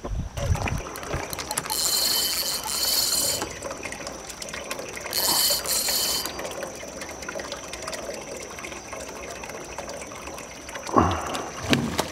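Spinning reel's drag buzzing in two pairs of short runs as a hooked channel catfish pulls line, with quieter reeling between.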